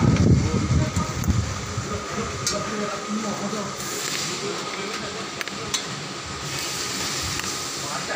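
Indistinct voices in the first second or so, then a steady hiss with a faint high steady tone and a couple of light clicks.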